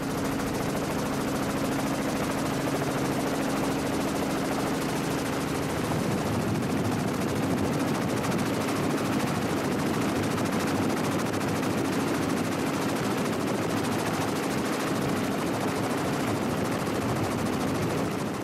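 Helicopter engine and rotor noise, steady and loud, with a low hum that weakens about six seconds in.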